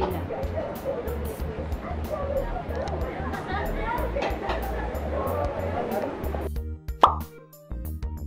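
Background music with a steady beat over chattering voices. A little past six seconds the voices drop out, and about seven seconds in a short, loud plop with a falling pitch sounds over the music, like an editing transition effect.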